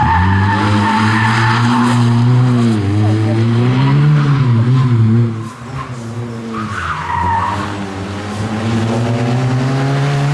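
Opel Corsa A rally car driven hard through a tight turn: its engine rises and falls in pitch while the tyres squeal, twice. After a sudden drop in level about five seconds in, the engine pulls harder, rising steadily in pitch as the car accelerates closer.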